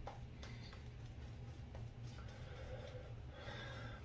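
Faint soft brushing of a synthetic shaving brush working lather over the face and neck, with a low steady hum underneath.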